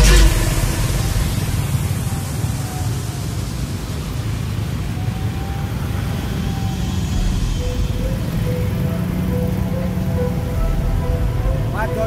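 Loud electronic music cuts off right at the start, leaving the steady low rumble of many motor scooters riding slowly together in a convoy.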